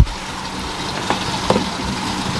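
Steady hum of fish-room aquarium pumps and filtration running, with a sharp knock right at the start and two fainter clicks a little after a second in.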